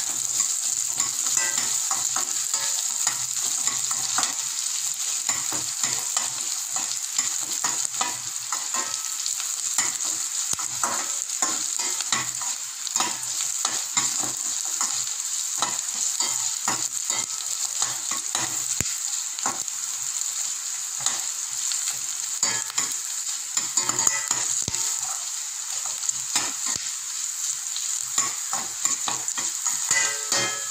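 Garlic cloves, ginger slices and black peppercorns sizzling in a stainless steel kadai, with a steady high hiss. A slotted steel spatula stirring them makes frequent scraping clicks against the pan.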